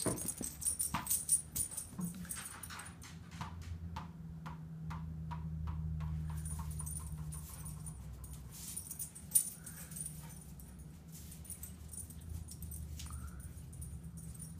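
Quick clicks and taps on a hard floor as a thrown ball bounces away and a German Shepherd puppy scrambles after it. The taps come closer together and fainter over the first several seconds, with one louder knock later on.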